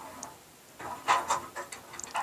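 A metal tube being screwed by hand into the centre of a lead-filled casting mould, giving a few short scraping creaks about a second in.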